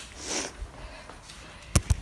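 A short breath, then two sharp knocks close together near the end.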